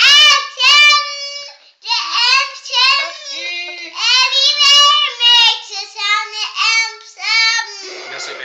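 A little girl singing loudly, a string of held, pitched notes broken by short pauses.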